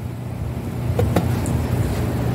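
A rolled sheet of scrap lead dropped into an electric lead-melting pot, giving two short metallic knocks about a second in, about a fifth of a second apart. A steady low hum runs underneath.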